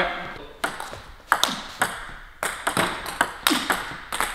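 Table tennis rally: the ball striking the two rackets and bouncing on the table in a quick, even run of sharp clicks, about two a second.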